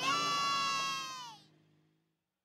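Children's voices in a long, high-pitched cheer from a departing car, holding one pitch and then falling and fading away about a second and a half in.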